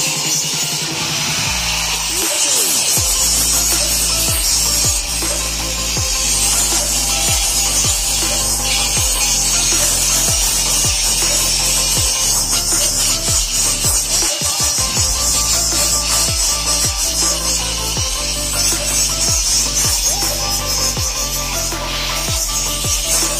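Handheld angle grinder running its disc along the welded seams of a steel box frame, a steady high grinding hiss of disc on metal. Background music with a steady beat and bass line plays throughout.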